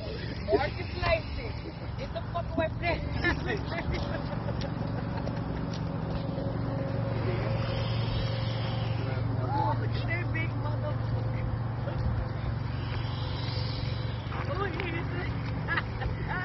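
A steady low motor drone that grows louder through the middle and then eases off, under scattered, indistinct voices.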